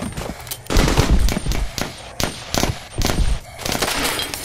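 Battle sound effects of rapid, overlapping gunfire bursts, with two heavier, deeper blasts: one about a second in and another about three seconds in.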